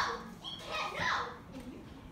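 Children's voices in short wordless exclamations: a loud one right at the start and another with a sliding pitch about a second in, then quieter.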